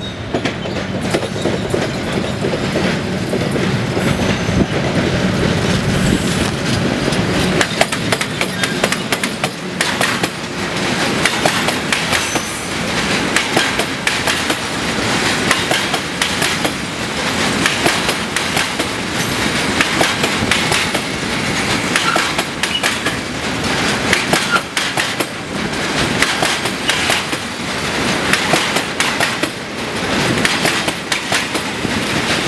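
A Škoda class 181 electric locomotive passes at close range with a heavy low rumble in the first several seconds. A long train of tank wagons follows, rolling by with steady, repeated clickety-clack of wheels over the rail joints.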